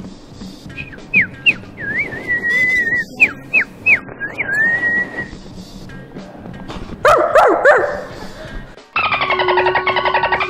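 A person whistling bird-like chirps: quick rising and falling whistles, then a few held notes, for about four seconds. About seven seconds in comes a short voiced imitation of a dog, sliding up and down in pitch, and near the end a steady pulsing sound begins.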